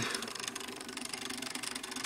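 Small stepper motor running on an Arduino, turning Lego gears that sweep a sonar sensor back and forth, with a steady, rapid pulsing hum.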